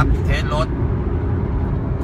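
Steady in-cabin engine and road noise of a turbocharged Honda Jazz (GK) with a manual gearbox, cruising at about 100 km/h: a low, even drone with no revving.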